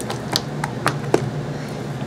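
Silicone coaster mold being flexed and peeled off a cured resin coaster, giving about five short, sharp clicks as the resin releases from the mold.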